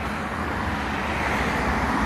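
Road traffic on the multi-lane road alongside, a steady rush of tyres and engines that grows louder as a vehicle draws near.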